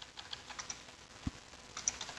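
Faint computer keyboard keystrokes: a few scattered light key clicks, with a dull knock about a second and a quarter in and a quick pair of clicks near the end.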